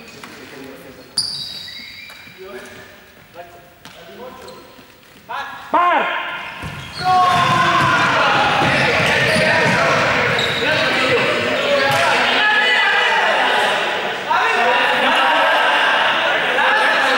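A few quiet seconds of low voices, then a sudden loud call about six seconds in. From about seven seconds in, a group of students shout and run on a sports-hall floor, their footfalls and voices reverberating in the large hall.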